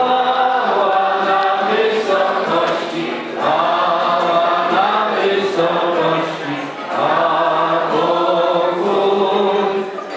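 A group of voices singing a Christmas carol together in unison, in phrases of held notes with short breaks about three and a half seconds in and again near seven seconds.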